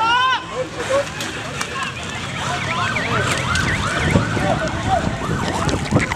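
A crowd of protesters shouting over one another, with many short cries that rise and fall in pitch, growing denser from about halfway through.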